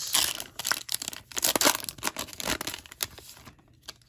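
Foil trading-card pack wrapper being torn open and crinkled by hand: a run of sharp crackles and rips for about three seconds, then dying away.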